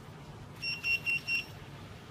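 Restaurant coaster paging system beeping: four short, high-pitched electronic beeps in quick succession, less than a second in all, as a pager is programmed with a code sent from the keypad transmitter.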